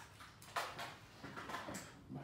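A few faint short clicks and rustles of small objects being handled, coming irregularly from about half a second in to near the end.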